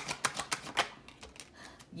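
Tarot cards being shuffled by hand, a quick run of sharp clicks through about the first second, then dying away.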